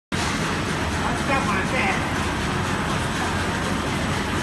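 Food production line running steadily: the wire-mesh conveyor belt and machinery give a continuous even noise with a strong low hum. Faint voices are heard in the background about a third of the way in.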